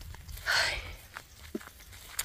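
Footsteps on grass during a walk across a pasture, over a low steady rumble, with a short breathy hiss about half a second in.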